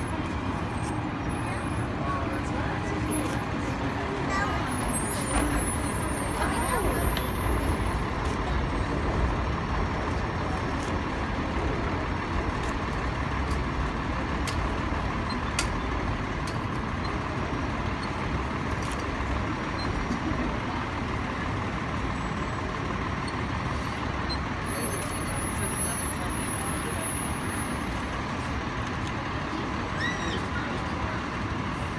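Steady city street traffic noise with people talking in the background.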